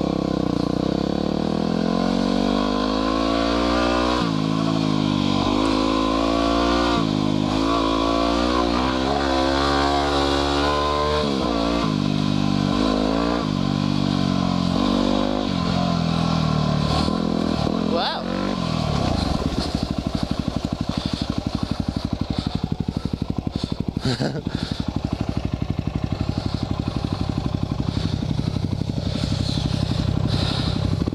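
2010 Yamaha WR250R's 250 cc single-cylinder four-stroke engine revving up and down over and over under changing throttle. About two-thirds of the way in it drops to a slow, steady putter near idle.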